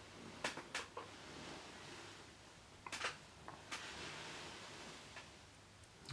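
Quiet room tone with a few faint, short clicks, a cluster about half a second in and another around three seconds in.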